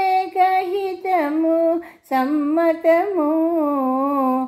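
A woman singing a Telugu devotional song solo, holding long drawn-out notes with slow ornamented turns. There is a short breath break about halfway through.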